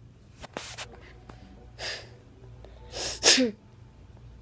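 A person's sharp, breathy bursts of air right at the microphone, three times, the third and loudest near the end trailing off in a short falling voiced sound.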